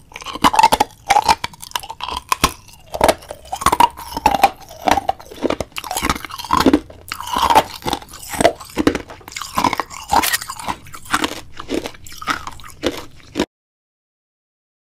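Loud, close-up crunchy chewing and biting: many irregular crunches in quick succession, cutting off suddenly shortly before the end.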